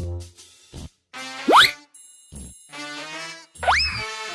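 Cartoon sound effects over bright children's music: a fast rising whistle-like glide about one and a half seconds in, the loudest sound, and another rising glide that levels off near the end.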